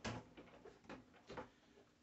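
A few faint clicks and light knocks from the plastic hose and housing of a shop vac being handled and draped around the top of the vacuum.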